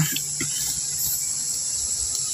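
A steady high-pitched background drone with no other distinct sound.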